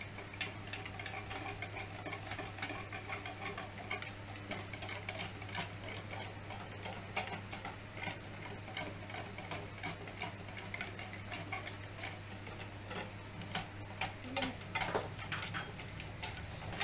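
Wire whisk beating egg yolks and liquid milk in a plastic mixing bowl: a rapid, irregular clicking of the wires against the bowl that keeps going.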